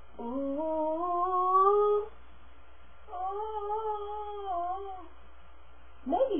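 A woman vocalizing two long held notes. The first slides upward for about two seconds. After a short pause, the second is held at the higher pitch with a slight waver.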